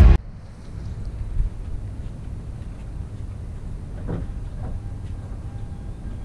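Car engine idling with the hood open, with loud valve-lifter noise over a steady low rumble. The lifters have been loud since the engine overheated.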